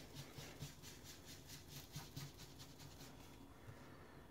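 Faint, quick repeated scratchy strokes of a foam ink blending tool being swirled and dabbed onto the edge of a cardstock strip, stopping about three seconds in.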